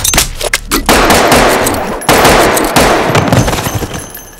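Gunfire in a film shootout: a few separate sharp shots in the first second, then a dense, rapid volley that runs on until near the end.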